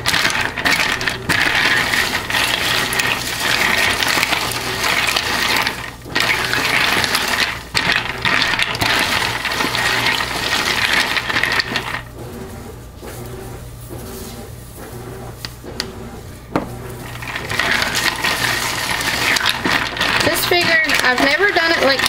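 Frozen coffee cubes clinking and rattling against a polypropylene plastic pitcher as lye is stirred in with a silicone spatula. The clatter stops for about five seconds past the middle, then starts again.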